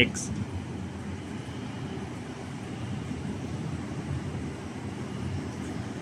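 Steady low rumble of distant city traffic, an even hum with no distinct events.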